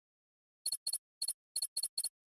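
A high, clicky sound effect for an animated title: six short double clicks, about a quarter second apart, starting about two-thirds of a second in, like keystrokes as text appears.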